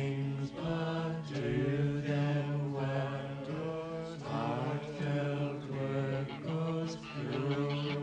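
A song: a voice singing a slow melody in phrases, over a steady, held low drone.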